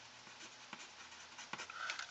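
Faint scratching of handwriting on paper as a few short words are written.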